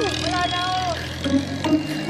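Passenger jeepney's engine running low as it drives away, with a woman's long shout after it and background music.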